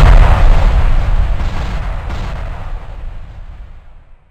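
Cinematic crash-and-boom sound effect for animated falling 3D letters: a loud, deep rumble with a few sharp crashing hits in the first two seconds, dying away steadily until it fades out near the end.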